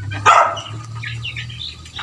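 A dog barking: one short bark about a quarter second in and another right at the end, with faint high bird chirps in between, over a steady low hum.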